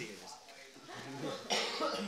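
Voices of a small group reacting to an opened gift, with a short cough about three quarters of the way in.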